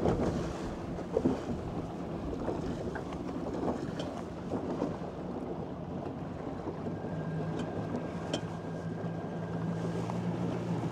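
Wind buffeting the microphone and water rushing past a small boat's hull on choppy water, with a couple of thumps near the start. About seven seconds in, a steady low hum and a thin high whine from the ePropulsion Navy 6.0 electric outboard come in.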